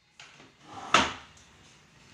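A single sharp knock about a second in, with faint movement sounds just before it.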